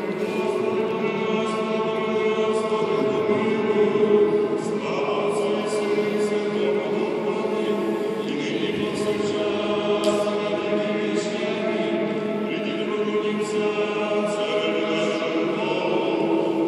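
Several voices singing liturgical chant together in harmony, unaccompanied, in long held chords that change every few seconds.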